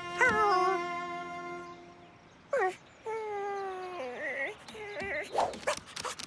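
Voiced dog noises from a cartoon pug character: a wavering call at the start, a long call falling in pitch about halfway, then short wobbly calls near the end.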